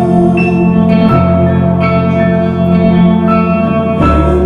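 Live instrumental band music: an electric guitar with echo and reverb over keyboards, playing long held chords that change about a second in.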